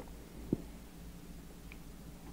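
Steady low hum of the recording's background, with one faint click about half a second in.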